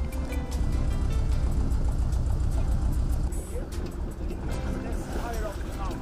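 Small motorboat's engine running under way with a steady, low pulsing rumble.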